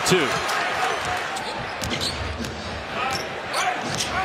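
Game sound from an NBA arena floor: a steady crowd murmur with short, high squeaks of sneakers on the hardwood court.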